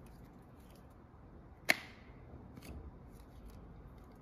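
A single sharp plastic click from the handheld Xiaomi Mi Vacuum Cleaner Mini being handled, with its motor off, followed by a few faint ticks.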